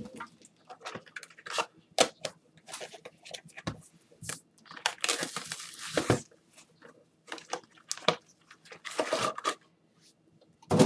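A cardboard trading-card hobby box being torn open and handled in gloved hands: crinkling wrapper, tearing and sharp clicks in irregular bursts. The loudest bursts come about five to six seconds in and again near nine seconds.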